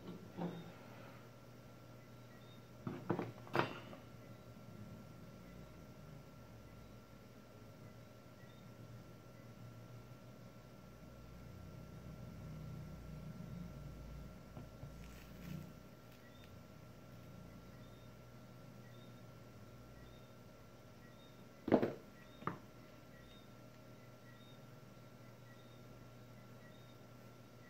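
Hand tools being picked up and set down on a workbench: a few sharp clicks and knocks, a pair about three seconds in and another pair a little past twenty seconds, over a faint steady hum.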